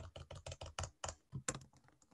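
Computer keyboard typing: a quick run of faint keystrokes, about eight a second, as a text label is backspaced and retyped. The keystrokes stop shortly before the end.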